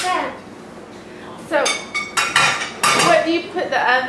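Kitchen utensils and dishes clattering: one sharp clink at the start, then a run of ringing clinks and scrapes of metal against crockery and pans about halfway through.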